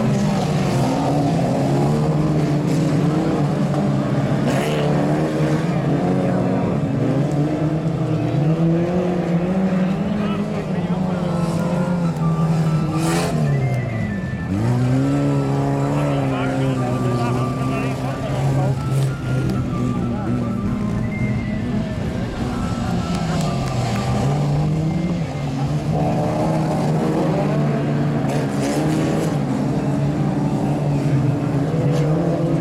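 Several old saloon cars racing on a dirt track, their engines revving up and down as they change gear and corner. About halfway through, one engine drops sharply in pitch and climbs again, just after a brief sharp knock.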